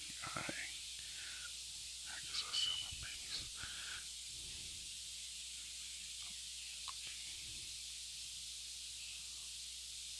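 Quiet steady hiss with a person's faint murmuring voice during the first four seconds, then only the hiss.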